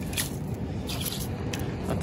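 A gloved hand scraping through a pile of small shells and shell grit on a rock, making a few short scratchy sounds about a fifth of a second and a second in, over a low steady rumble.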